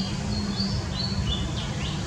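Birds chirping: a series of short, high whistled notes, a couple with quick downward slurs near the end, over a steady low rumble.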